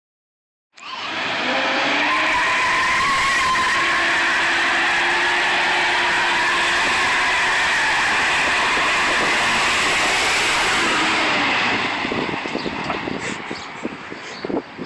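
A 1979 Pontiac Trans Am's V8 held at high revs while its rear tyres spin and squeal in a burnout. The sound starts about a second in, stays loud and steady, then falls away near the end.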